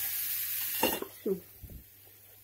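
A pancake sizzling in a hot frying pan: a steady hiss that cuts off about a second in. There are a couple of light knocks from the spatula and pan.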